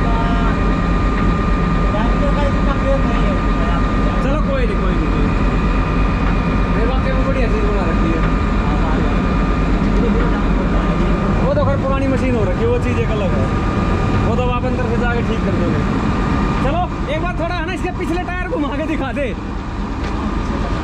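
Large diesel engine of a Wirtgen WR 2400 road recycler, a 430 hp twin-turbo Mercedes-Benz, idling steadily: a loud low rumble with a constant high whine over it.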